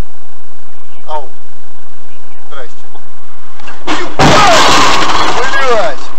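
A car collision about four seconds in: a sudden loud crash with breaking glass, the noise lasting nearly two seconds.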